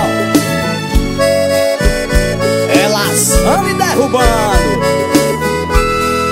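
Forró band playing an instrumental passage led by accordion, with sustained reedy chords and bending runs over a steady drum beat.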